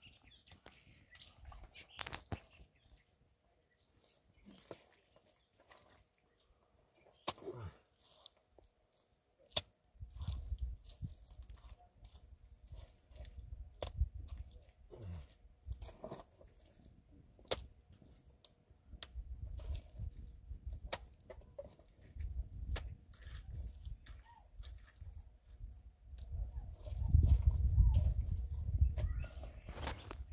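Hands working wet mud and stones while packing mud into a dry-stone wall: scattered clicks, knocks and soft squelches. Intermittent low rumbling comes in after about ten seconds and is loudest near the end.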